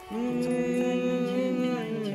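A song playing from a portable cassette recorder: a singing voice holds one long steady note, moving to a new pitch near the end.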